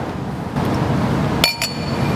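A wine glass clinking twice in quick succession about one and a half seconds in, each clink ringing briefly in clear high tones.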